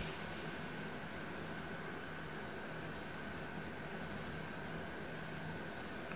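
Quiet, steady hiss of room tone with a thin, faint high whine and a low hum running through it. No distinct sounds stand out.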